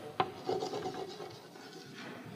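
Chalk writing on a blackboard: a sharp tap as the chalk meets the board, then quick scratching strokes that grow fainter in the second half.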